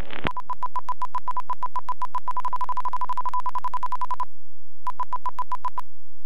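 Electronic stall or angle-of-attack warning beeping in the pilot's headset during the landing flare: a single high tone pulsing in quick beeps that speed up until they are nearly continuous, the sign of the wing nearing the stall just before touchdown. It breaks off briefly about four seconds in, then beeps again for about a second.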